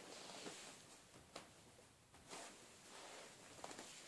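Near silence: faint rustling from someone shifting about, with a soft click about a second and a half in and a few faint ticks near the end.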